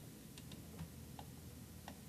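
A few faint, irregularly spaced clicks from a computer mouse scroll wheel over low room hiss.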